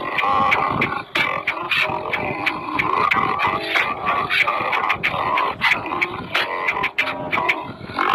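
A heavily slowed-down recording of singing with music, dense and continuous, broken by many sharp clicks or hits.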